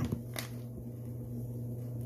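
Clothes dryer running as a steady low hum, with a single sharp click about half a second in.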